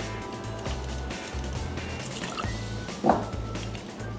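Background music with a steady beat, over lemon juice being poured from a glass bottle into a metal jigger and into a stainless steel cocktail shaker.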